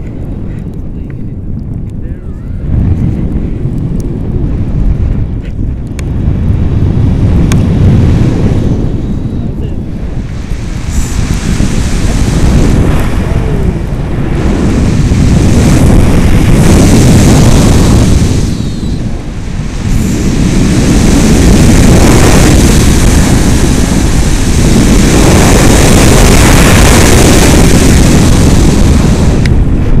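Wind from paraglider flight rushing over the camera's microphone, a loud rushing noise that swells and fades in long waves and is loudest over the last ten seconds.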